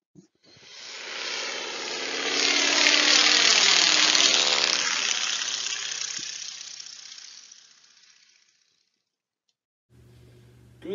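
Propeller airplane flying past: its engine drone swells to a peak a few seconds in, drops in pitch as it passes, then fades away well before the end.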